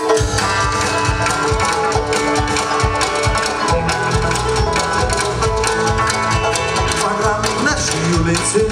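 Live country band with banjos, guitar and drums playing the instrumental opening of a song, starting right at the beginning; a steady drum beat carries under the plucked banjos, and the bass comes in stronger a few seconds in.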